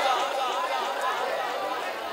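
Low background chatter of several voices from the audience in the gathering, fading over the two seconds.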